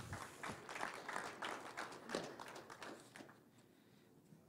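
Audience applauding, with scattered clapping that dies away about three seconds in.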